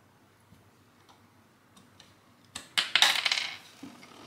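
Small plastic LEGO pieces clicking faintly as they are fitted onto a build. About two and a half seconds in comes a loud clatter of about a second as a LEGO crab piece springs off and lands on the table.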